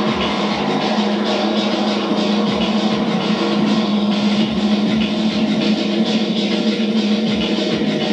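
Live instrumental electronic music from keyboards and synthesizers, built over a sustained low drone, with deep kick beats that drop in pitch about once a second. No vocals.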